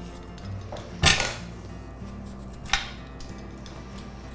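Two short, sharp sounds of kitchen utensils at work, about a second in and again just before three seconds, the first the louder, over soft background music.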